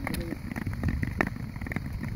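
Long-distance skates gliding and scraping over clear lake ice, with irregular clicks and crackles from the blades and ice over a low wind rumble on the microphone.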